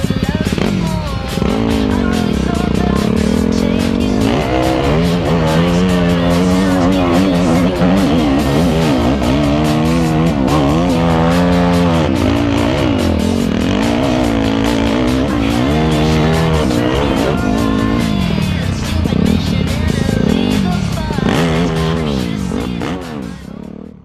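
Enduro dirt bike engine revving under load on a steep uphill climb, its pitch rising and falling over and over as the rider works the throttle, with music playing underneath.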